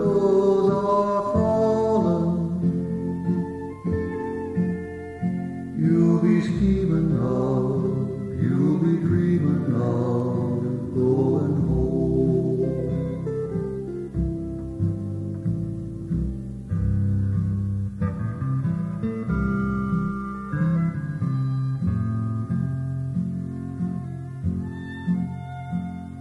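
Instrumental break in a slow western song: a fiddle plays the melody, sliding between notes, over acoustic guitar accompaniment.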